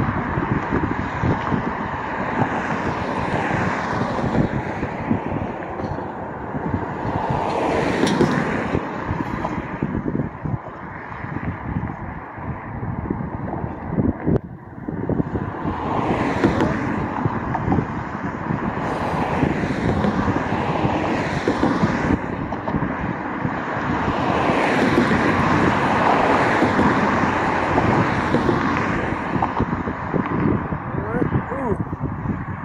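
Street traffic: cars passing one after another, each swelling up and fading away, with wind buffeting the microphone throughout.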